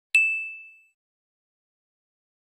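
A single bell ding sound effect timed to the animated notification bell: one sharp strike with a high ringing tone that fades away within about a second.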